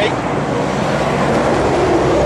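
A steady, loud engine drone with a low hum underneath, like a motor vehicle or engine running close by.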